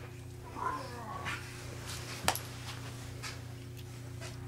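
A baby's brief high-pitched vocal sound, its pitch bending up and down, about half a second in, then a single sharp click about two seconds in, over a steady low hum.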